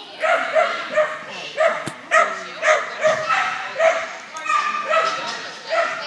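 Dog barking repeatedly in short yips, about two a second.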